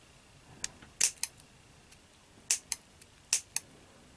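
Scissors snipping thin cereal-box cardboard: a series of short snips, mostly in pairs, about one pair a second.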